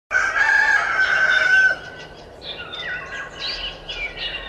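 A rooster crows once, a single long call of about a second and a half, followed by quieter bird chirps.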